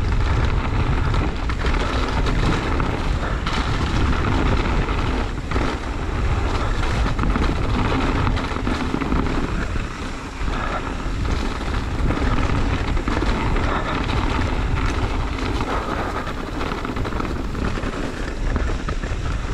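Wind buffeting the microphone and tyres rolling over a dirt trail during a mountain-bike descent: a steady rush with a heavy low rumble that swells and dips with the riding.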